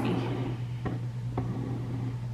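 A coloring book being turned on a table by hand: two light ticks about half a second apart over a steady low hum.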